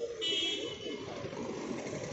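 A short, high-pitched vehicle horn toot about half a second long, shortly after the start, over steady street traffic noise.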